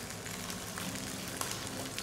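Curry paste frying in hot oil in a wok, sizzling steadily as water is added.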